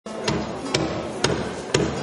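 Percussion opening a song: a steady beat of sharp knocks, about two a second, each with a low drum thud under it.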